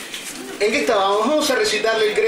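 A man's voice, loud through a microphone, starting about half a second in with a wavering, bending sound and then holding one long sung note.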